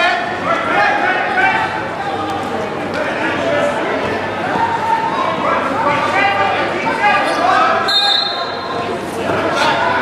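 Indistinct voices of spectators and coaches echoing in a large gymnasium, with a short high squeak about eight seconds in.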